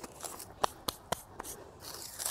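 Loose soil and clods dropping off a freshly dug dahlia tuber clump as it is handled and set down on the garden bed, with several sharp little ticks and rustles of dry roots and soil.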